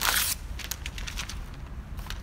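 Large sheets of a flip-chart paper pad being flipped back over the top of the easel: a loud paper rustle right at the start, then scattered crinkles for about a second.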